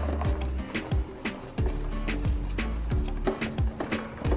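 Background music with a steady beat and deep bass notes that drop in pitch.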